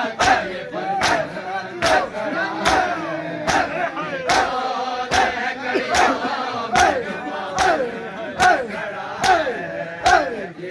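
A crowd of mourners doing matam, striking their chests with their hands in unison: a sharp slap a little more than once a second, each followed by a loud chanted shout from the crowd that falls in pitch.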